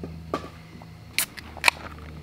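Aluminium beer can being handled and opened: three short, sharp clicks from the pull tab, the last and loudest shortly before the end.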